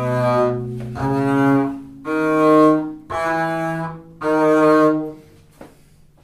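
Double bass bowed arco, playing about five slow, separate notes of an E major two-octave scale, each held for about a second. The last note fades out shortly before the end.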